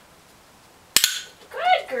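A dog-training clicker clicking once about a second in: a loud, sharp double click of press and release.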